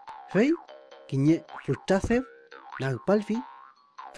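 A man narrating in Mapudungun over light children's background music, with a springy cartoon boing sound effect.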